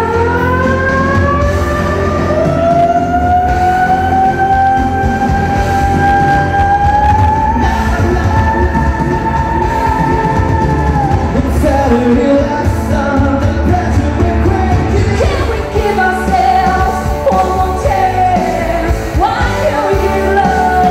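A woman singing live into a microphone over amplified pop backing music with a steady bass. She holds one long note that slides up over the first few seconds and is sustained for about ten seconds, then moves on to shorter phrases.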